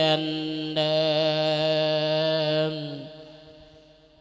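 A Thai monk's voice chanting an Isan lae sermon, holding one long steady note with a brief dip just under a second in, then fading out about three seconds in.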